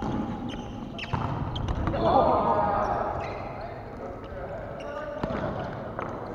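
Volleyball rally in a large gym: a few sharp slaps of hands on the ball, near the start, about a second in and about five seconds in, with players' voices calling out, loudest about two seconds in.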